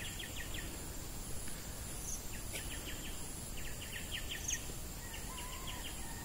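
Forest ambience: a low steady background haze with a faint, constant high whine, over which short runs of quick chirps from small wild creatures repeat every second or two.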